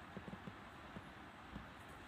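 Quiet room tone with soft, irregular low ticks or taps, several a second.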